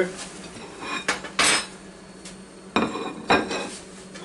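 Dishes clinking: a ceramic plate being set down on a granite countertop, with several sharp clinks and knocks, the loudest about a second and a half in. A steady low hum runs underneath.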